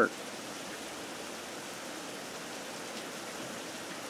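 Steady, even background hiss with no distinct events: outdoor room tone.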